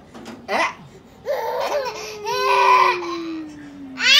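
Baby and adult laughing in two bursts from about a second in, with a thin tone sliding slowly down in pitch beneath the laughter in the second half.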